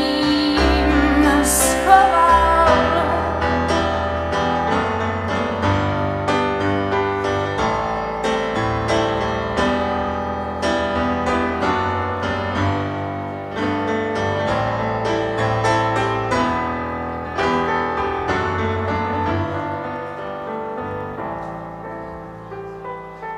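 Piano sound from a Nord Stage 2 stage keyboard playing a slow instrumental passage of chords and melody, growing gradually quieter toward the end. A held, wavering note sits over it for the first couple of seconds.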